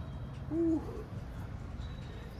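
A single short, low hoot-like vocal sound about half a second in, rising and falling in pitch, over a steady low hum.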